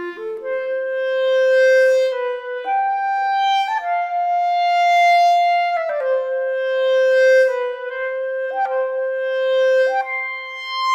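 Sampled solo clarinet (8Dio CLAIRE Clarinet Virtuoso) playing a slow legato line. A quick rising run at the start leads into long held notes, joined by smooth legato transitions and short flicks of quick notes before several of the held notes.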